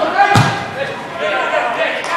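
A football struck hard once, a sharp thud about a third of a second in, with players' shouts and calls on the pitch.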